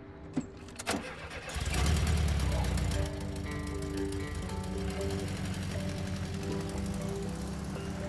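Two sharp clicks, then a classic Volkswagen Beetle's air-cooled flat-four engine starts about a second and a half in. It runs loudest for a moment, then settles into a steady run, under a music score.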